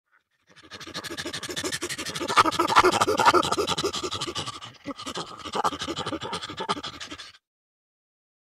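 Chimpanzee giving a long run of rapid, breathy panting calls, like hoarse laughter, building to its loudest about three seconds in, with a short break near five seconds, then cutting off suddenly near the end.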